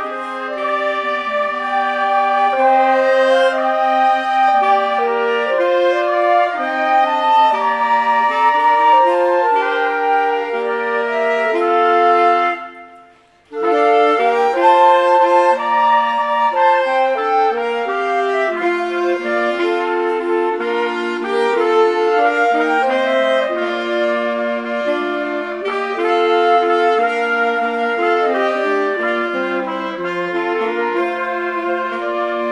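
Small wind ensemble of three flutes, clarinet, saxophone and trumpet playing a melody together in held, stepping notes. The music stops for about a second roughly halfway through, then resumes.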